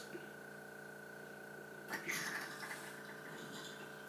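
Vacuum pump of a homemade vacuum wine bottle filler humming steadily while a bottle fills, with a brief hissing rush about two seconds in.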